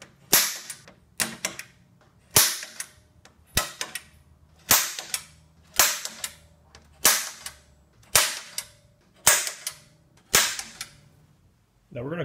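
Automatic center punch snapping against an eighth-inch galvanized steel sheet about ten times, roughly once a second, each sharp snap leaving a brief metallic ring from the sheet as hole centers are marked through a cardboard template.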